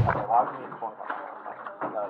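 Indistinct voices talking in the background, with a sharp click near the end.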